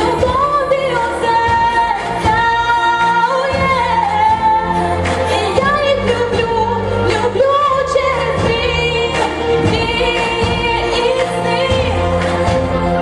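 A woman singing live into a handheld microphone, holding long notes, over instrumental accompaniment with bass and a steady beat.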